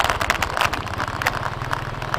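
Small motorcycle engine running at low speed, a steady fast low pulse, with a few light ticks and rattles.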